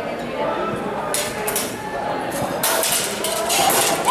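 Steel rapier and dagger blades clinking and scraping against each other in a fencing exchange, in bunches about a second in and again through the last second and a half, over a murmur of voices in a large hall.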